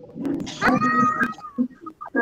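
A single high, drawn-out meow, held for under a second, with quieter scattered sounds around it.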